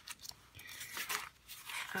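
Paper pages of a handmade journal insert rustling and brushing softly as they are turned by hand, in a few brief rustles.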